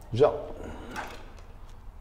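A man says a single word ("zo"), then faint handling sounds, light rustles and a small knock, as a small battery studio flash is set in place.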